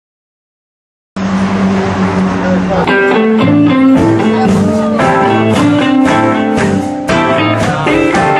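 A live band with electric guitars playing amplified music. The sound cuts in suddenly about a second in, with a held, noisy chord, and the band moves into a tune with distinct guitar notes about three seconds in.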